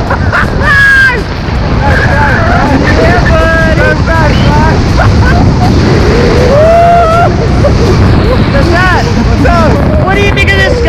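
Wind buffeting a body-mounted camera's microphone during a tandem parachute descent under an open canopy: a loud, steady rush with voices coming through it.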